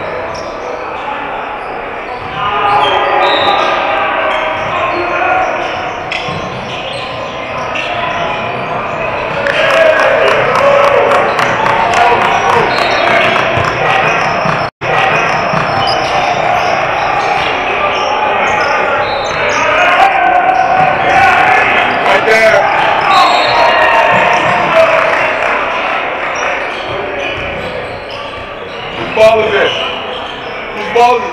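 Basketball bouncing on a hardwood gym floor during play, with players and spectators talking and calling out, echoing in a large hall. The sound cuts out for an instant about halfway through.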